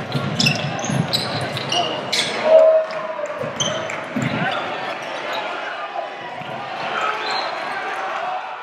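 Live game sound in a gymnasium: a basketball bouncing on the hardwood floor, with short high sneaker squeaks in the first few seconds, over the voices of the crowd and players echoing in the hall.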